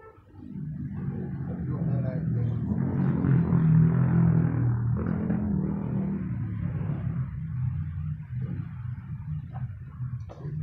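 A low, steady engine-like hum that swells over the first few seconds and slowly fades toward the end.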